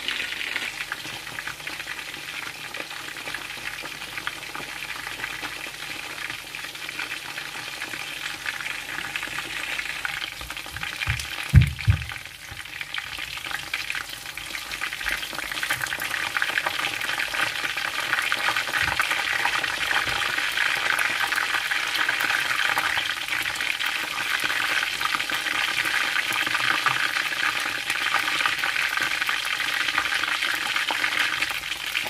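Chicken pieces sizzling as they shallow-fry in hot oil in a frying pan: a steady frying hiss that grows louder in the second half. A brief low thump partway through.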